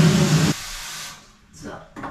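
Water running hard from a bathtub tap into a plastic gallon jug. The flow eases about half a second in and is shut off a little after one second.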